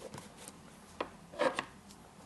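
Light handling sounds at a study desk: a sharp click about a second in, then a short scuffing rustle.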